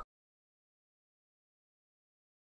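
Silence: the sound track drops to digital silence.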